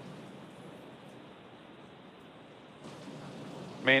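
Faint, steady hiss of the webcast's open audio line, with no distinct sound in it. About three seconds in the hiss becomes brighter, and a voice begins at the very end.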